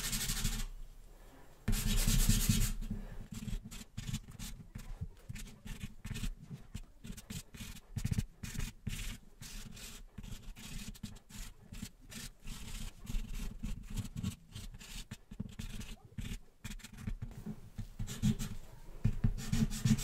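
White charcoal pencil scraping across toned paper in many quick, short strokes, hatching in highlight lines. There are two longer, louder rubbing passes in the first three seconds.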